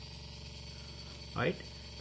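Steady low background hum with a thin high whine running through it. One short spoken word comes about one and a half seconds in.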